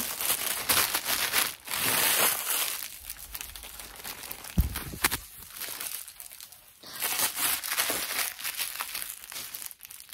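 Crinkling and rustling as a fluffy static duster is shaken and brushed right up against the microphone, coming and going in uneven patches, with a single low thump about halfway through.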